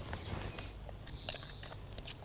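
Hydrated lime powder poured into a plastic tub of lime wash, quiet, with a few faint ticks from the tub being handled.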